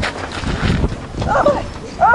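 A low rumbling, scuffing noise, then about a second and a half in a woman's short, wavering vocal cry.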